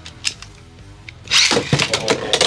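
Faint background music, then from about a second and a half in a loud clatter of sharp clicks and scraping: Beyblade X tops (Dranzer Spiral 4-60F against Dransword 3-60N) striking each other and grinding around the plastic stadium.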